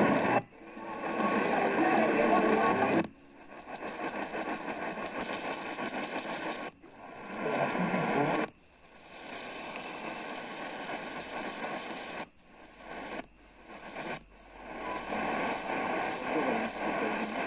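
A mediumwave AM radio being tuned up the band in steps. The audio cuts out briefly about seven times, and after each cut a different weak, distant station comes in, with hiss and static and snatches of broadcast talk.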